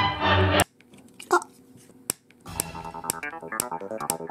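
Choral background music cuts off suddenly. After a short quiet there is a brief squeak, then one sharp crack: the plastic toy-train car body splitting. Electronic music with a ticking beat starts about halfway through.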